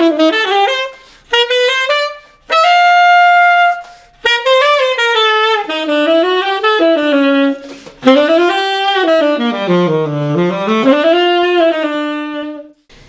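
1967 Selmer Mark VI tenor saxophone played solo: phrases of sliding, bending notes broken by short breaths, with a long held higher note about three seconds in and a sustained lower note near the end.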